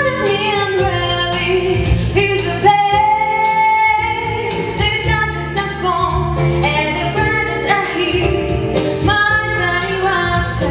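A woman singing a jazz-rock song into a microphone over full instrumental accompaniment with bass and drums, holding one long note about three seconds in.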